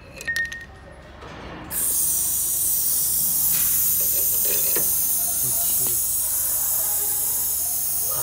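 A toggle switch on a Cummins PT injector leak tester's panel clicks, and about two seconds in compressed air starts hissing loudly and steadily as the gas supply is turned on and the tester pressurizes.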